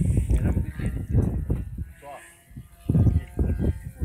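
Indistinct talking: a voice speaking in short phrases, with a brief pause about halfway through.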